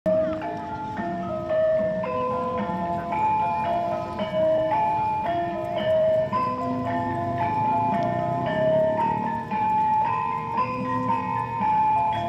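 Javanese gamelan music: a steady, quick melody of struck bronze metallophone notes, several notes a second, over lower sustained tones.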